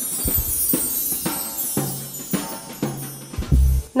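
Background music with a steady drum beat, about two beats a second, over low bass notes.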